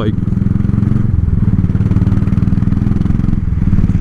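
Royal Enfield single-cylinder motorcycle engine running under way in a steady thump, its note shifting slightly about a second in and again near the end. The bike is freshly serviced and running smooth, its earlier heavy vibration gone, as the rider says.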